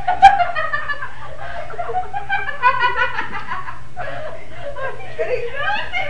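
Several girls laughing and giggling in repeated bursts, with a sharp knock just after the start.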